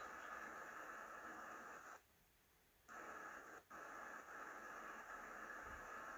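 Faint steady hiss that cuts in and out abruptly, dropping out for about a second near the middle and again briefly just after: line noise from an open microphone on a video call.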